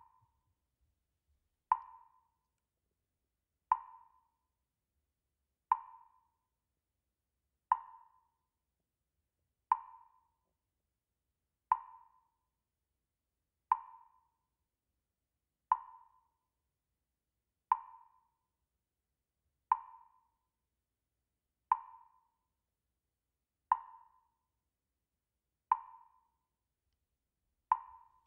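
A short, woody percussive tick repeats evenly every two seconds, about fourteen times, each dying away quickly, with silence between the ticks: a steady pacing beat.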